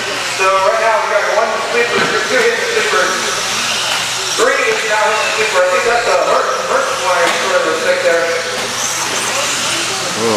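Electric 2WD RC buggies with 17.5-turn brushless motors racing on an indoor dirt track: a steady hissing whine of motors and tyres under a voice talking almost without pause.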